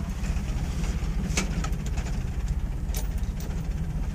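Toyota 4Runner engine idling along in gear, heard from inside the cab, with the truck crawling in low range through its rear transfer case. The hum is steady and low, with a couple of light clicks.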